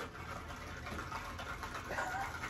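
An iced cold brew with oat milk being swirled in a plastic cup, the drink sloshing softly.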